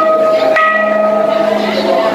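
Metal temple bell struck once about half a second in, a clear tone ringing on for over a second as the previous stroke dies away, over crowd chatter.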